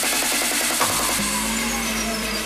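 Hardstyle electronic dance music from a DJ mix, in a stretch where the kick drum and bass have dropped out, leaving the higher synth parts. About a second in, a long falling sweep and a held low note come in.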